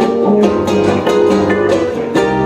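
Live instrumental passage: acoustic guitar strummed in a steady rhythm under held chords from a button accordion (bayan), with no singing.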